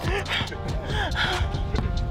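A young man gasping and sighing, short breathy vocal sounds with no words, over background music.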